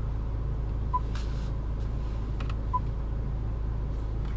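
Two short beeps from the Range Rover Evoque's touchscreen infotainment system as it is tapped, about a second in and near the three-quarter mark, over a steady low cabin hum.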